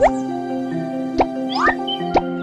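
Light background music with cartoon sound effects: a quick rising slide at the start, a short pop about a second in, and another quick rising slide soon after.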